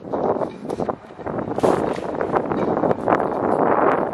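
Wind buffeting the camera's microphone in a steady rumble, with a few brief sharp knocks.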